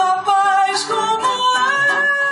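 A woman singing a slow, wavering melody, accompanied by a classical guitar; near the end she settles on a long held note.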